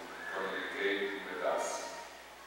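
A man's voice reciting the prayers of the Mass at the altar, in short spoken phrases, with a sharp hiss of an 's' near the end.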